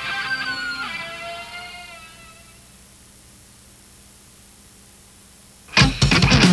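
Rock music with electric guitar, its sustained notes fading out over the first two seconds, then a low hiss until a loud sound cuts in abruptly just before the end.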